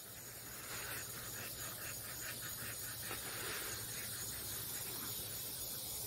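Faint outdoor ambience: a steady hiss with a faint, rapid pulsing of about five beats a second that comes and goes.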